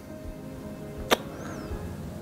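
Quiet background music with steady held notes, and one sharp click about a second in.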